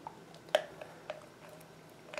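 Small plastic clicks as a PVC cap is pressed down onto a cemented PVC pipe: one sharp click about half a second in and a lighter one about a second in.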